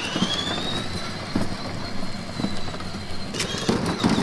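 Electric drive motor of a child's ride-on toy car (Tesla Model S replica) running as the car moves, a steady high whine that has just finished rising, over the rumble of its plastic wheels rolling on concrete. A few sharp clicks come about three and a half seconds in.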